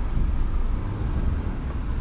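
Scania truck's diesel engine running with a steady low rumble, heard from inside the cab as the truck creeps forward at low speed.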